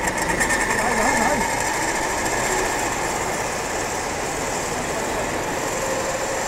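Steady rushing of a fast, swollen river, with a faint high whine in the first two seconds or so from the pulley of a tuin crate running out along its wire rope.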